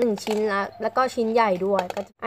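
A girl talking in Thai throughout; no other sound stands out from her speech.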